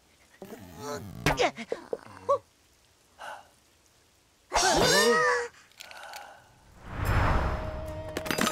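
Wordless cartoon character vocal sounds: short grunts and exclamations, then one loud wavering cry about halfway through. Near the end comes a burst of low rumbling noise, a sound effect.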